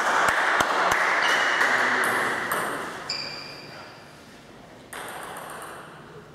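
Table tennis ball bounced repeatedly, sharp light clicks about three a second that stop about a second in, over a steady background hiss that fades away.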